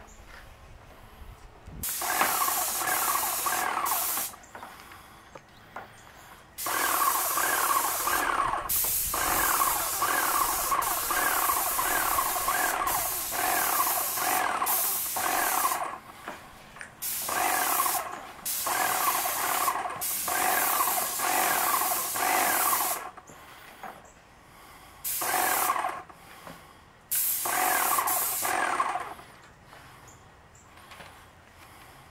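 Airless pressure paint sprayer gun spraying paint in hissing bursts several seconds long, with a pulsing whine running through the spray. It starts and stops repeatedly between passes, with the longest spray lasting about ten seconds.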